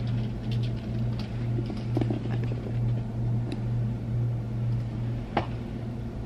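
Steady low hum, with a few light clicks and one sharper click near the end.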